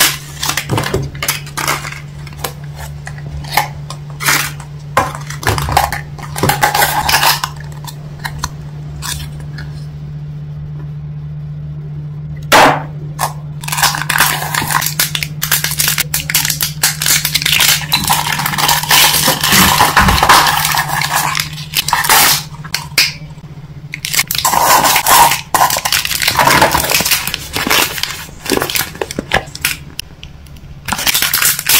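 Crinkling and crackling of a plastic candy wrapper as a Minions candy cone is torn open and its small wrapped sweets are handled, in quick sharp crackles with denser rustling stretches. A steady low hum sits underneath and stops about two-thirds of the way through.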